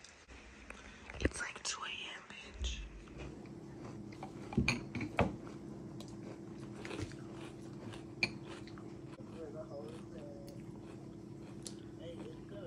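Someone eating from a bowl with a spoon close to the microphone: chewing, with a few sharp clicks of the spoon, loudest around the middle. A steady low hum runs underneath from about three seconds in.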